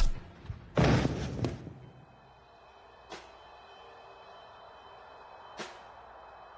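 Fight-scene sound effects: a blow landing, then a loud crash about a second in as a body goes down, dying away. Two faint sharp knocks follow over a faint high steady tone.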